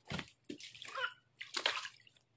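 Water splashing and sloshing in a shallow inflatable paddling pool as a child's feet step into it, in three splashes, the last the loudest.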